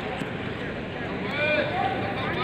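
Indistinct voices of people talking at a distance over steady outdoor background noise.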